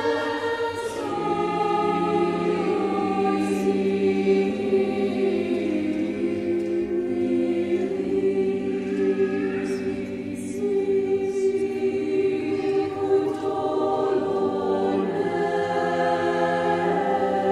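Mixed choir of men and women singing slow, long-held chords, with a few soft hissing 's' consonants, in a reverberant church.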